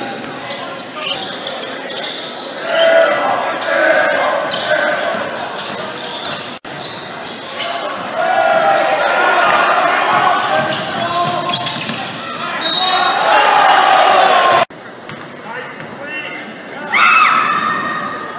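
Crowd in a gymnasium cheering and shouting during a basketball game, the ball bouncing on the court, everything echoing in the large hall. The noise swells loudest in the middle, cuts off abruptly to quieter chatter, then rises again with a burst of shouting near the end.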